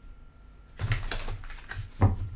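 A deck of tarot cards being shuffled by hand: a quick run of crisp card-on-card clicks starting about a second in, ending in a sharper knock.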